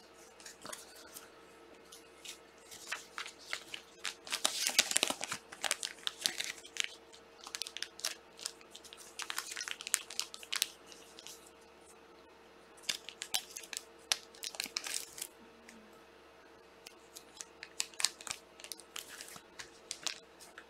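Trading cards and their plastic sleeves being handled on a table: irregular crinkling rustles and small clicks, busiest about four to seven seconds in and again after thirteen seconds, with a quiet spell around eleven seconds.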